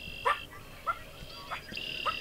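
Frogs calling: high-pitched trills about a second long, one at the start and another near the end, with short lower calls in between.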